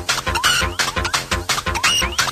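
Electronic dance music from a late-1990s club DJ session: a fast, steady kick-drum beat with short rising chirps repeating over it.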